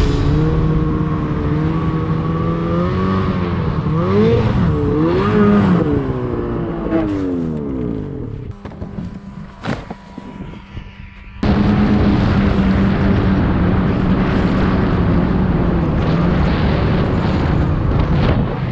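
Snowmobile engines revving, the pitch rising and falling for the first several seconds. About halfway through the sound drops away for a few seconds with one sharp knock, then cuts suddenly to a snowmobile engine running steadily at an even pitch.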